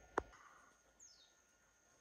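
Near silence with faint outdoor background, broken by a brief sharp click just after the start and one faint, high bird chirp falling in pitch about a second in.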